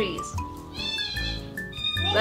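Soft background music with long held notes, and a short high-pitched voice just under a second in.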